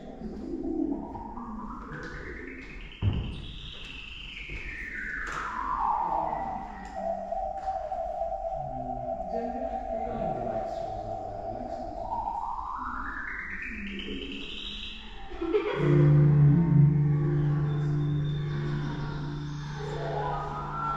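The installation's electronic soundscape: a single synthetic tone slides up high in pitch, falls back and holds steady, then slides up again. About sixteen seconds in, a loud low droning chord comes in. There is a brief knock about three seconds in.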